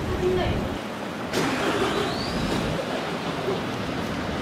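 Busy city street ambience: a steady wash of urban noise with voices of passers-by. The background changes abruptly about a second in, and a faint short rising chirp sounds near the middle.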